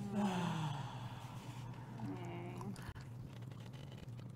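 A person's breathy, voiced sigh trailing off and falling in pitch, then a short hummed voice sound about two seconds in and a small click near three seconds.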